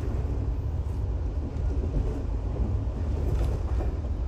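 Passenger train running, a steady low rumble of the wheels and carriage heard from inside the compartment.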